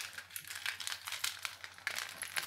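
Handling noise: irregular crackling and clicking as a hand moves and grips a clear plastic earring stand right by the phone's microphone.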